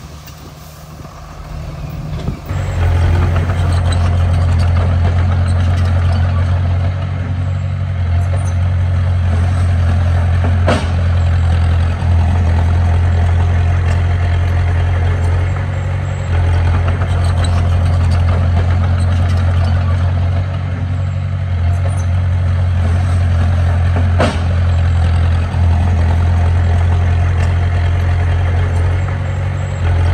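A Komatsu D20P bulldozer's diesel engine running loud and steady as it pushes a pile of dirt and rock. The engine comes in abruptly about two and a half seconds in, after a quieter start, and two sharp knocks sound along the way.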